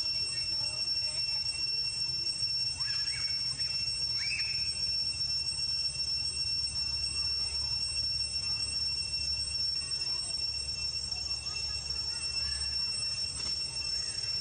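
Steady high-pitched insect drone, with a few brief chirping calls about three to four seconds in.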